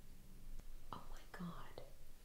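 Hushed speech: a few whispered words about a second in, over a low steady hum.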